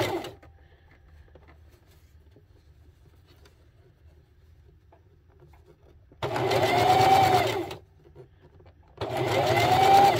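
Electric sewing machine stitching in short starts and stops, a few stitches at a time. One run ends just at the start, then two runs of about a second and a half come about six and nine seconds in, separated by quiet pauses. In each run the motor's whine rises and then falls.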